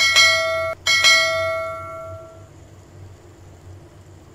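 Notification-bell 'ding' sound effect from a subscribe-button animation, struck twice about a second apart, the second ring fading out over about a second and a half.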